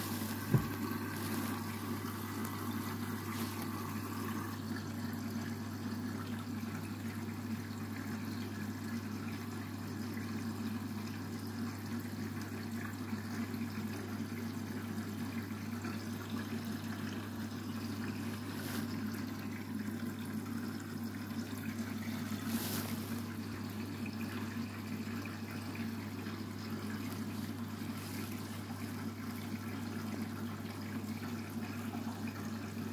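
Candy front-loading washing machine taking in water for a rinse: steady trickling of water into the drum over a constant low hum. A short click about half a second in.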